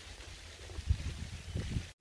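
Wind rumbling on the microphone, with a couple of soft bumps in the middle. It cuts off suddenly just before the end.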